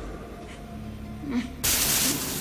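A faint low hum, then a sudden loud hiss-like noise about one and a half seconds in that keeps on steadily.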